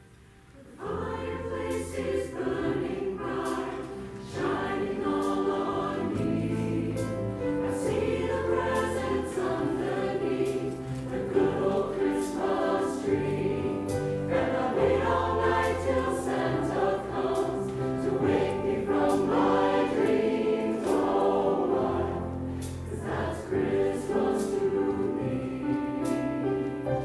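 Mixed choir of men and women singing with instrumental accompaniment, coming in about a second in after a brief hush.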